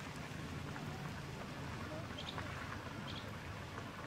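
Faint outdoor background hiss with a few brief, faint high chirps in the second half.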